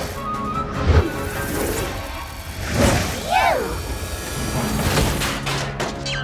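Cartoon soundtrack music with sound effects: a sharp hit about a second in, others near three and five seconds, and a short sliding voice-like cry around three and a half seconds.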